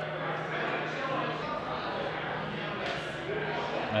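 Indistinct chatter of other people in a busy room, with a steady low hum underneath.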